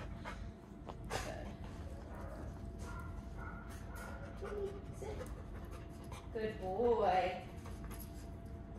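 A dog panting, with a single knock about a second in.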